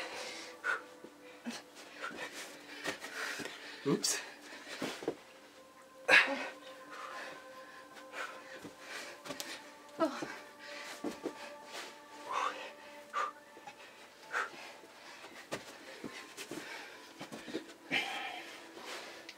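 Two people breathing hard and panting through burpees, with thumps of hands and feet landing on a carpeted floor, the loudest about six seconds in. Faint music plays underneath.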